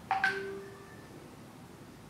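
A short double metallic clink just after the start, metal knocking on metal, with a brief ringing of several tones that fades out within about a second.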